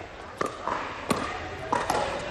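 Pickleball paddles striking a hard plastic pickleball: three sharp pops about two-thirds of a second apart, over faint background chatter.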